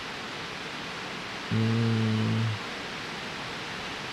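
A man humming one steady, unchanging note for about a second near the middle, over a steady background hiss.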